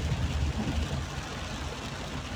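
Steady low rumble of a car's engine and tyres heard from inside the cabin while driving on a waterlogged road, with the hiss of heavy rain and spray on the car.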